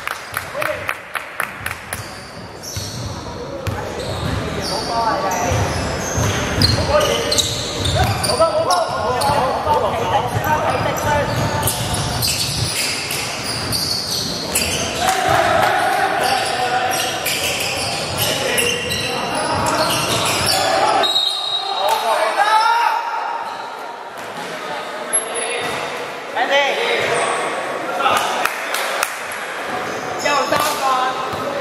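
Basketball bouncing on a hardwood court floor during a game, with a quick run of knocks in the first couple of seconds and scattered bounces later, mixed with players' voices.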